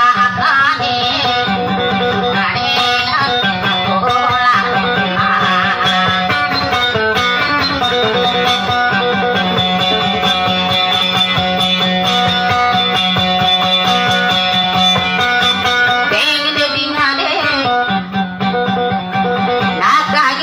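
A plucked string instrument plays a dayunday instrumental passage: a busy melody of held and shifting notes over a steady low drone note.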